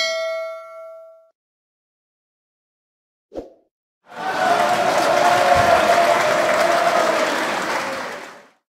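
A bell-like 'ding' sound effect as an on-screen notification bell is clicked, ringing out over about a second. About three seconds later comes a brief thud, then a steady rushing noise that carries on from about four seconds in.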